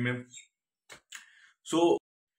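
A man's voice speaking, with a pause of about a second and a half in which a faint click and a soft short noise are heard before he speaks again.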